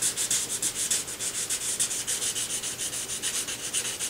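Fine sandpaper rubbed lightly by hand over a harp's dark finished wood in quick, even back-and-forth strokes, a rhythmic hiss several strokes a second, taking off white paint spots that sit on top of the old finish.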